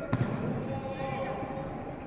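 A single heavy thud on the judo mat just after the start, over indistinct voices echoing in a large sports hall.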